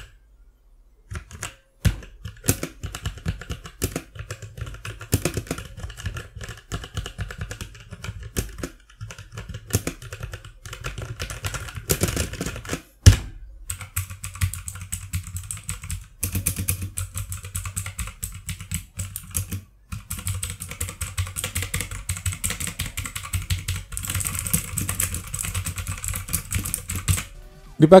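Typing on a Fantech MK871 RGB tenkeyless mechanical keyboard with Kailh switches: a rapid, uneven run of key clacks, broken by a few short pauses.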